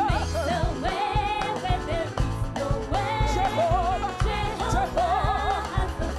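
Women's praise team singing a gospel worship song into microphones, their voices wavering with vibrato, over a live band with bass and a steady beat.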